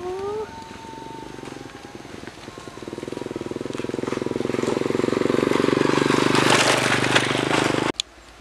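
A small engine running, growing steadily louder for several seconds, then cut off abruptly.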